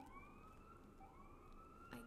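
Faint siren sounding in repeated rising sweeps, about one a second, each climbing and then holding.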